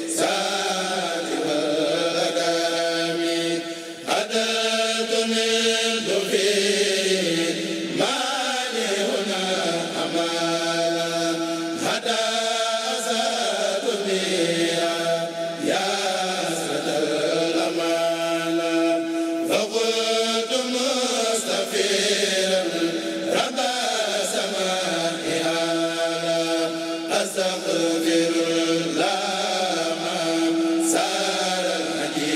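A group of men chanting religious verse together into microphones, in unison, in phrases that break about every four seconds, with a long held note in many of them.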